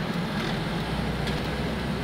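Steady low rumble of a car's engine and tyres heard from inside the cabin while creeping along in slow highway traffic.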